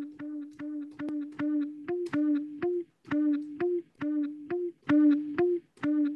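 A chopped guitar sample triggered from an MPC sequence: one short plucked note repeated in a quick, uneven rhythm, every few hits stepping up to a slightly higher note.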